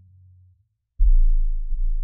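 Deep 808 bass of a trap beat: the previous low note fades out, then after a brief silence a single deep 808 note hits about a second in and slowly decays.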